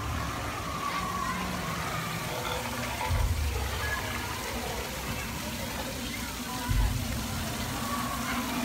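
Small waterfall running steadily over rocks, heard through a phone microphone, with low thumps on the microphone about three seconds in and near the end.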